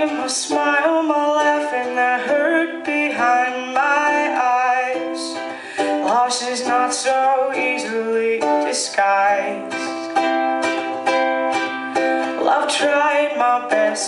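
A woman singing live to her own strummed ukulele, with the chords strummed in a steady rhythm under the sung melody.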